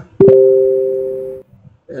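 Desktop chat-app notification chime for an incoming message: a single two-tone electronic ding that starts sharply and fades away over about a second.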